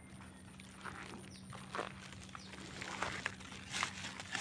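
Dry pine needles and grass rustling and crackling under feet and a probing stick, in short irregular scrapes that get louder and more frequent near the end.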